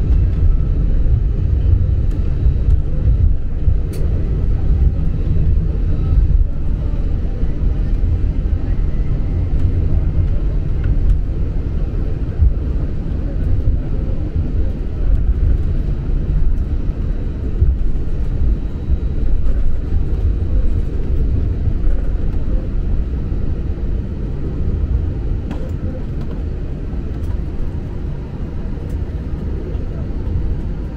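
Low, steady rumble inside a Vueling airliner's cabin as the jet taxis to the gate on idling engines, easing a little near the end.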